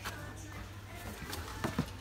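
Faint background music playing in a shop over a steady low hum, with a few light clicks as a plastic blister-packed toy is handled.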